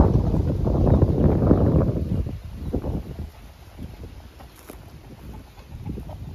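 Wind buffeting the microphone, a loud low rumble for about the first two seconds that then dies down to a faint background.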